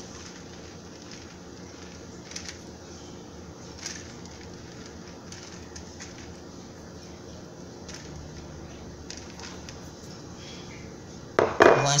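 Low, steady kitchen room hum with a couple of faint light clicks, while shredded cheese is sprinkled by hand; a woman's voice speaks briefly near the end.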